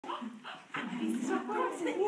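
Indistinct human voices.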